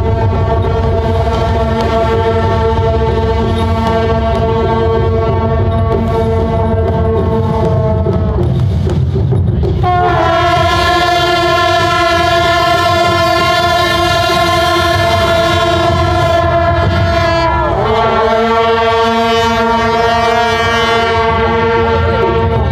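Long brass processional horns (shaojiao) of a Taiwanese temple procession blowing long held notes together. The notes break off and change pitch about nine seconds in and again around eighteen seconds, over a steady low rumble.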